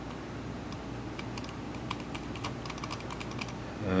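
Faint, irregular ticking and clicking as a cotton swab rubs and rolls the scroll ball of an Apple Mighty Mouse, over a steady low hum.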